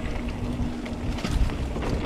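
Wind buffeting the camera microphone over the rumble and rattle of a mountain bike rolling along a dirt singletrack, with scattered clicks from the bike.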